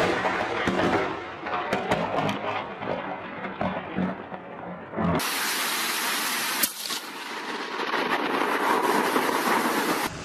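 Storm noise: a rough rushing sound with many crackles and knocks. About five seconds in it cuts abruptly to the steady hiss of heavy rain, with a single sharp crack soon after.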